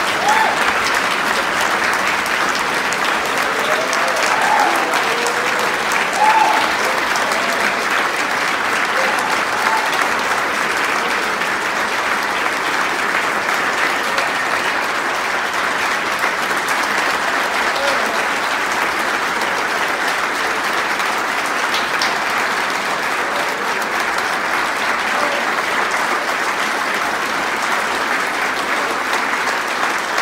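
Large audience applauding steadily, with a few voices calling out in the first several seconds.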